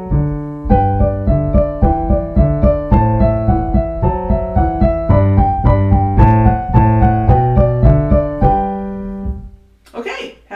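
Piano playing the closing bars of a beginner-level duet accompaniment in a steady, even rhythm. About eight and a half seconds in, it ends on a held final chord that rings out and fades.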